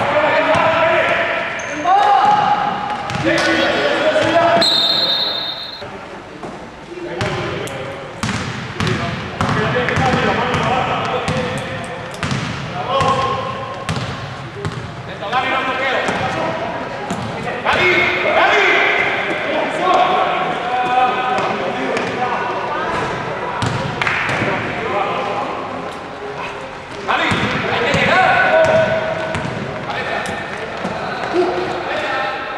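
Basketball bouncing on an indoor court floor during live play, with players and coaches shouting in a large sports hall. A short shrill whistle blast comes about five seconds in.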